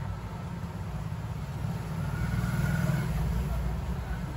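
A low steady rumble that swells about halfway through and eases again near the end.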